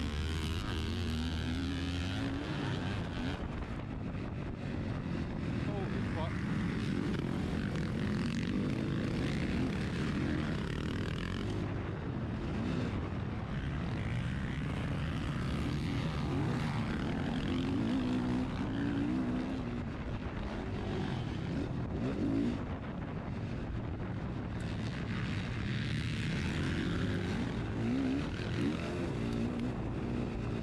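KTM motocross bike engine revving hard and easing off again and again as it is ridden round a dirt track, with other dirt bikes running close by.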